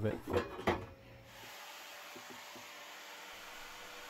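A man's voice finishing a phrase, then from about a second in a faint, steady hiss of background noise with no distinct sound in it.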